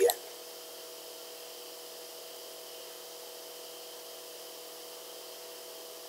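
Room tone: a steady low hiss with a faint, even hum underneath, and no other sound.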